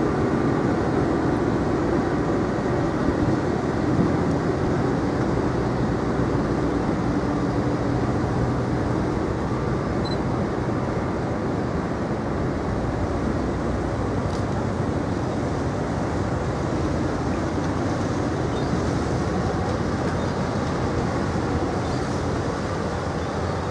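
Offshore supply vessel's diesel engines and propellers running with a steady low rumble as the ship moves slowly astern close by.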